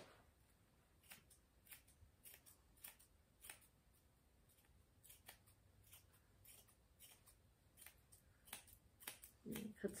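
Grooming scissors snipping through a Schnauzer's matted beard hair: a string of faint, separate snips at uneven intervals, cutting the mats in half close to the lips.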